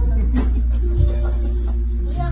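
Instrumental backing music in a vocal gap: a steady low bass with a held chord above it, and no singing.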